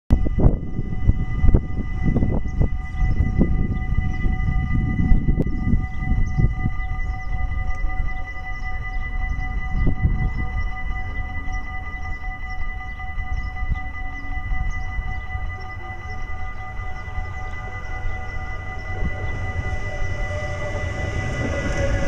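Valleilijn Protos electric multiple unit approaching along the track and drawing close to run past near the end, its sound swelling as it nears. Several steady high tones sound throughout, with low rumble, typical of wind on the microphone, in the first half.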